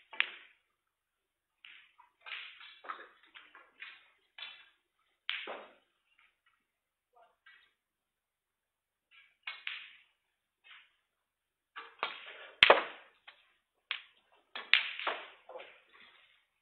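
Snooker cue tip striking the cue ball sharply about three-quarters of the way in, followed a couple of seconds later by a few lighter clicks as the ball arrives at the reds. Faint, scattered short sounds occur in between.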